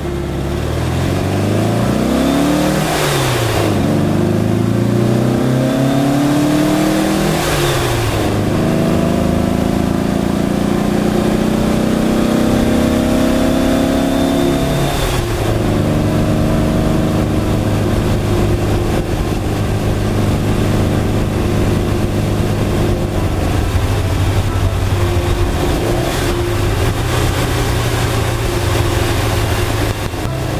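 1960 Porsche 356 B's air-cooled flat-four engine accelerating up through the gears. Its pitch climbs and drops back at three gear changes, about three, eight and fifteen seconds in, then holds fairly steady at a cruise.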